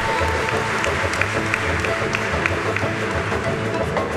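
Large Balkan folk orchestra playing a čoček, its bass keeping a steady beat, while the audience applauds over it. A held flute note ends just after the start.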